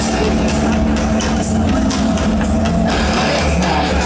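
Loud heavy metal music with a steady beat, played through the festival PA and recorded from inside the crowd.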